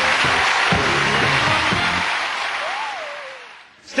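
Studio audience applause over the show's music, the music's low notes stopping about halfway through and the clapping fading out near the end.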